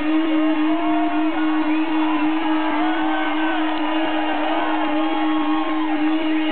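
A loud, unbroken drone held on one steady pitch through a rock band's stage amplifiers at the close of a song, with crowd voices cheering and shouting over it.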